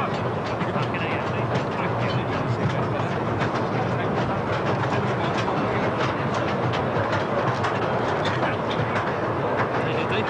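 Underground colliery train carrying miners, rattling along its rails: a dense, steady clatter with many small clicks, with voices in the background.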